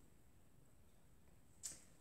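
Near silence: room tone, then a brief breathy hiss near the end, a quick intake of breath just before chanting starts.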